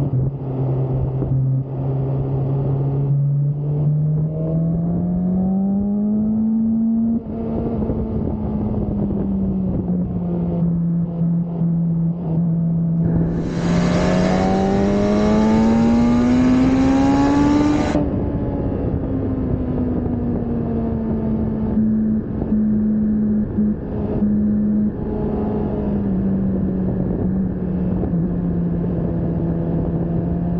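BMW S1000RR inline-four engine heard onboard at track speed, its pitch climbing under throttle and dropping back as it changes gear and brakes for corners. From about 13 to 18 s it is at its loudest and fullest, the revs rising steadily before falling off.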